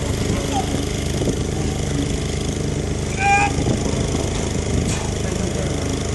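A steady low engine drone. A short raised voice comes in about three seconds in.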